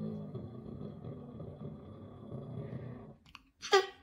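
A long, low, steady vocal drone, the playful noise daddy makes when he's tired, stops about three seconds in. It is followed by a short, loud, high squeal that falls in pitch, from the delighted baby.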